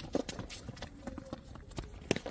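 Tennis rally on an outdoor hard court: a string of light, sharp knocks from the ball being struck and bouncing and from shoes stepping on the court, one stronger knock just after the start.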